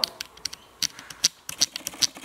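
A quick, irregular run of light clicks and taps, about a dozen in two seconds, over a faint background.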